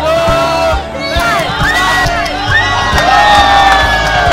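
A group of young men shouting and cheering together in long drawn-out yells, the longest held through the second half, over background music with a steady beat.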